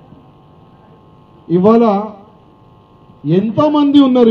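Steady electrical hum from a microphone sound system, heard in the pauses. A man speaks two short phrases through the microphone, about a second and a half in and again near the end.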